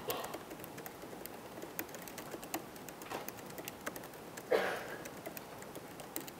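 Laptop keyboard being typed on in quick, irregular keystrokes, each one a short click. About four and a half seconds in there is a brief, louder rush of noise.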